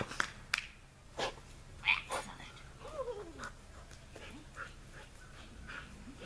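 A dog panting in quick, soft breaths, with a short falling whine about three seconds in and a few sharp clicks near the start.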